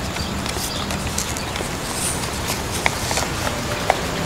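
A sheet of paper being folded and pressed flat by hand against a tiled floor, with scattered light ticks and two sharp taps near the end, over a steady background hiss.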